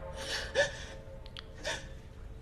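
A distraught woman's gasping, tearful breaths: two breathy intakes, each ending in a short catch of the voice, about half a second in and again near the end.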